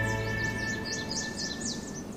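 A TV show's music jingle fading out, its held chords dying away, with a quick run of high bird chirps over it.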